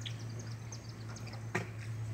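Faint, scattered chirps of small birds over a steady low hum, with one sharp click about one and a half seconds in.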